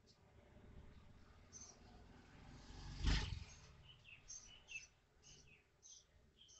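LPG gas cylinder valve opened, with a rushing noise building to a loud whoosh about three seconds in, then dying down.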